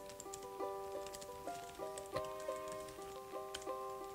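Instrumental background music, a melody of held notes changing a few times a second, with faint clicks of typing on a computer keyboard.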